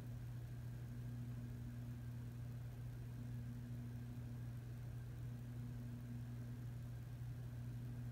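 A faint, steady low hum with a soft hiss underneath, unchanging throughout.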